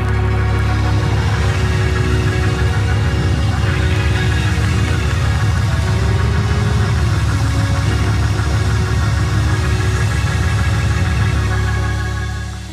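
Hammond organ played loud with full, held chords over heavy, pulsing bass, surging in at the start and dropping back near the end.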